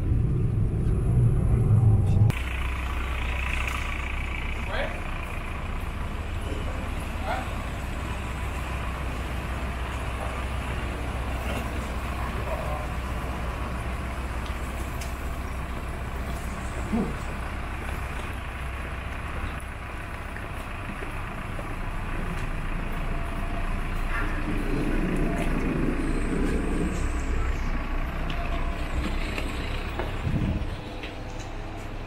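Airport apron shuttle bus running, a steady low engine rumble with faint voices. About two seconds in it drops suddenly to a quieter steady low hum.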